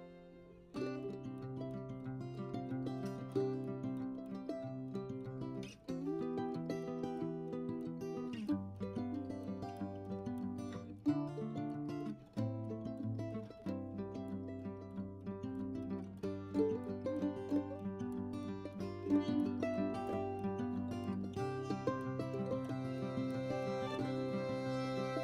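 Instrumental background music: plucked-string notes over held chords that change every couple of seconds, with a short dip just before a new phrase starts about a second in.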